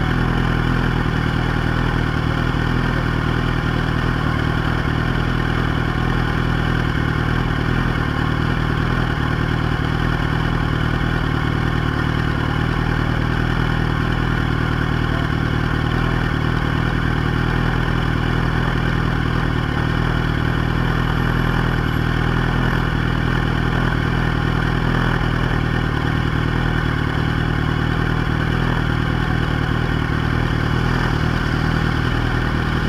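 Yamaha YZF-R1 inline-four motorcycle engine idling steadily, heard up close from a camera mounted on the bike.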